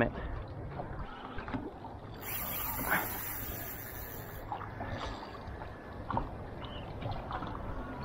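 Water lapping against the hull of a small Gheenoe boat, with scattered light knocks and a brief high hiss a couple of seconds in.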